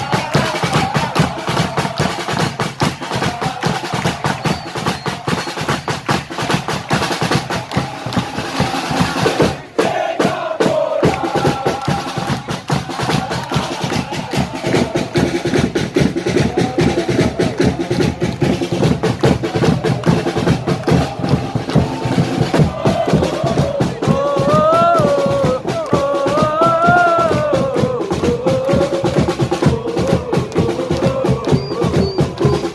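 Football supporters chanting in the stands to fast, steady drumming, with a brief break about ten seconds in. Near the end the chant rises and falls in a sung melody.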